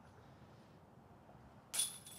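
Near silence, then about two seconds in a putted golf disc hits the chains of a disc golf basket with a short metallic chain jingle.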